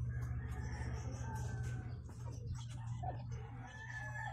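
A drawn-out animal call, over a steady low hum.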